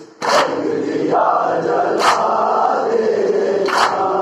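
A group of men chanting a Shia noha in unison, punctuated by loud collective chest-beating (matam): three sharp unison strikes, evenly spaced about 1.8 seconds apart, in time with the chant.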